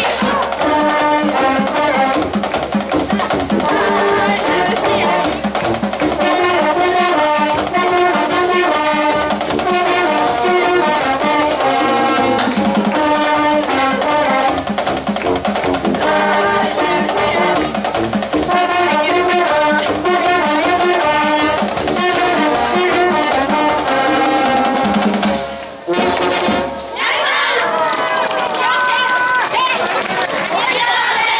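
Brass marching band of trumpets, trombones and sousaphone with drums playing a lively tune, which stops about 26 seconds in with a short closing hit. The players then shout out together.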